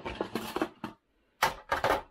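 Rustling and clattering of packaging as plastic-wrapped power adapters and parts are handled and pulled out of a cardboard box, in two bursts with a short gap near the middle.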